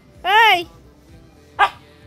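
A cat meowing: one loud call that rises and falls in pitch, then a shorter, clipped sound a little over a second later.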